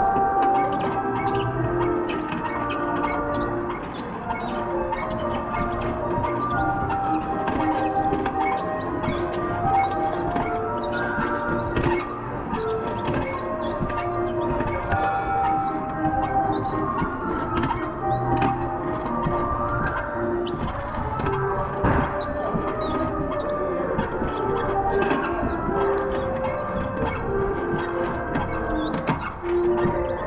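Instrumental music playing a melody of held notes, with light clicking throughout.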